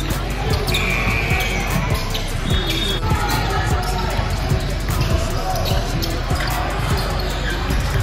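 A basketball bouncing on a gym court in a string of irregular knocks, heard over background music and voices.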